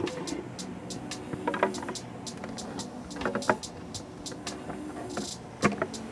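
Screwdriver turning the worm screw of a hose clamp on an intake air filter, in a few short bursts of clicking, over background music with a steady beat.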